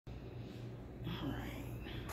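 A soft, whispered human voice about a second in, over a steady low hum.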